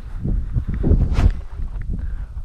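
Quick footsteps on grass and wind buffeting a head-mounted camera's microphone as the pilot spins and discus-launches a small RC glider, with a short sharp rush of air about a second in.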